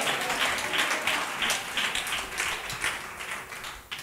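Congregation applauding, the clapping gradually dying away.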